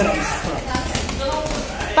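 Background voices in a gym, with a few soft thuds of boxing-gloved strikes landing on a partner held down on foam mats during ground-and-pound drilling.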